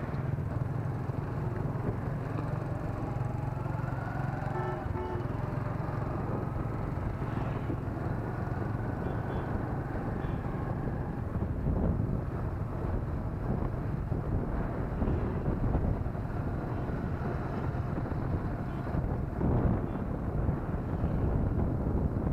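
Motorcycle engine running steadily while riding, heard under wind on the microphone; from about halfway the wind rumble grows rougher, with louder gusts.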